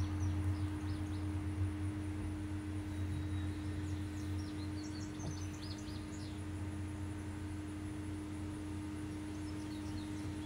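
A steady low hum with birds chirping faintly: a few short chirps about half a second in and a cluster of them between about four and five and a half seconds.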